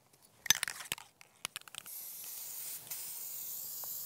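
Aerosol can of Krylon 1311 matte clear finish spraying onto a plastic duck decoy: a steady hiss that starts about two seconds in. Before it come a few short clicks and rattles from the can in hand.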